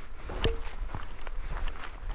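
Footsteps walking along a forest path, an irregular run of soft crunches and clicks underfoot, with one sharper click and a brief squeak about half a second in.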